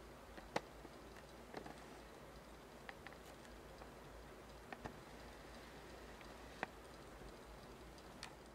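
A small low-temperature Stirling engine running quietly on heat from a cup of hot water: a faint background with a handful of faint, irregularly spaced ticks from its gears and linkage.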